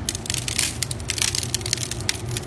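Coarse Arctic sea salt sprinkled by hand over raw chicken wings in an aluminium foil pan for a dry brine. The heavy, dense grains land on the foil and meat as an irregular crackle of many quick ticks.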